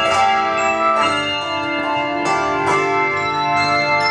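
A handbell choir ringing bronze handbells in chords. Each new chord is struck about every half second to second, and the earlier notes ring on beneath it.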